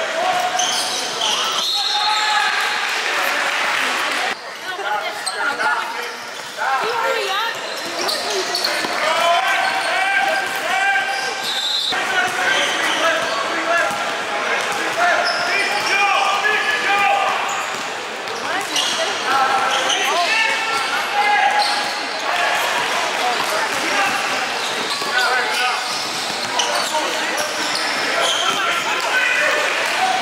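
Basketball being dribbled on a hardwood gym floor amid the voices of players and spectators in a large hall. The sound changes suddenly a few times where the footage jumps between plays.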